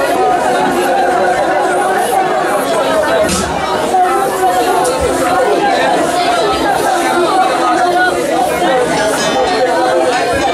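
Congregation praying aloud all at once: many overlapping voices, steady and loud.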